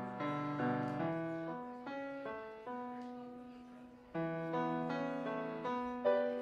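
Solo piano playing slow, held chords; each struck chord fades away until the next one sounds.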